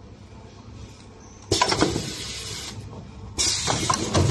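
Semi-automatic wipe packing machine at work: two sudden bursts of hissing, rustling noise. The first starts about a third of the way in and lasts about a second; the second starts near the end, as the film-wrapped wipe pack is handled on the table.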